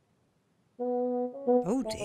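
A comic brass sound effect: a low held note about a second in, then a step in pitch and a wobbling slide up and down. A short noisy swish comes near the end.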